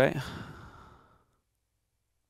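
A man's breathy sigh trailing off the end of a spoken word and fading out within about a second, then complete silence.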